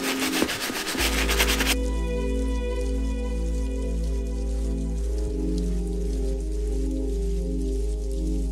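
A soft-bristle brush scrubbing a sudsy leather sneaker upper for about the first second and a half, then background music of slow, held chords over a low bass note, with the scrubbing no longer heard.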